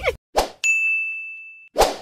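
Outro sound effect of a bright single 'ding' chime that rings and fades over about a second, set between two short noisy swishes.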